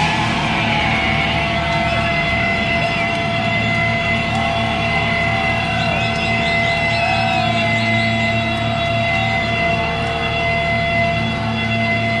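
Electric guitar feedback ringing through the amplifiers: several steady held tones with small wavering swoops in pitch, with no drums or strumming under it.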